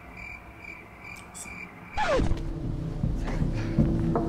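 Crickets chirping faintly and steadily in a horror film's soundtrack. About halfway through, a sudden swell with a steeply falling tone settles into a low held drone over a deep rumble: a suspense music sting.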